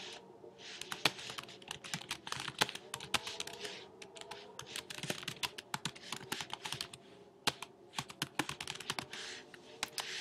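Typing on a computer keyboard: an irregular run of key clicks, several a second, with short pauses, as a line of text is entered.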